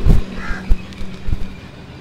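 Quiet outdoor street background with a faint steady low hum and a few light taps, and a short faint call about half a second in.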